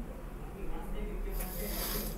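Faint speech in the background, with a short hiss about one and a half seconds in.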